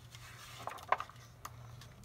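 A book's paper page being turned: a soft rustle, then a few faint clicks and taps over a low steady hum.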